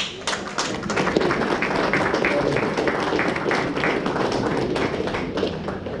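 Audience applauding: many hands clapping in a dense, irregular patter that builds over the first second and then holds steady.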